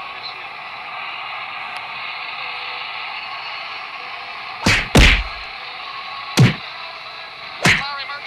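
Punch hits: a quick pair a little past halfway, another about a second and a half later, and one more near the end, over a steady background hiss.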